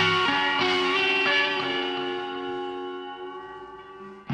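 A blues band's closing chord ringing out: after a last ensemble hit right at the start, the electric guitar and keyboard hold sustained notes that slowly fade away.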